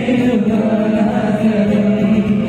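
Live band playing a Bollywood song mashup: male voices singing long held notes together over keyboards and cajon.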